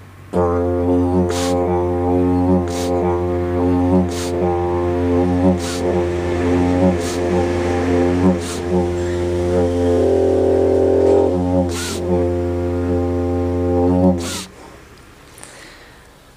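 Didgeridoo playing one unbroken low drone for about fourteen seconds, with sharp rhythmic accents about every second and a half. It stops shortly before the end. The drone is held without a break by circular breathing.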